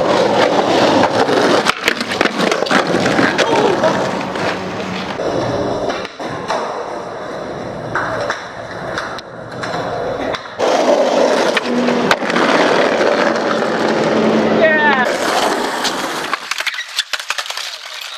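Skateboard wheels rolling on concrete, broken by sharp clacks and smacks of the board popping, hitting and landing, over several clips cut one after another.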